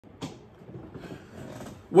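A single click, then faint rustling as a hand handles the camera to set it up; a man's voice starts at the very end.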